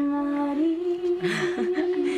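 Humming voices holding long, steady notes, the pitch stepping up once about half a second in.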